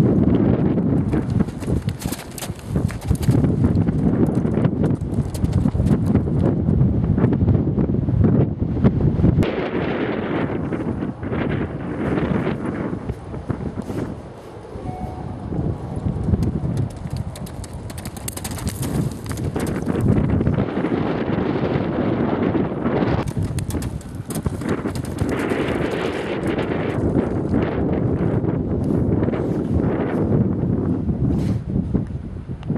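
Hoofbeats of a horse cantering on turf and jumping a bank, with heavy wind buffeting the microphone throughout.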